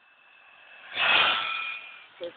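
Radio-controlled toy car driving past close by: a steady high whine with a rush of noise that swells about a second in, then fades as it goes by.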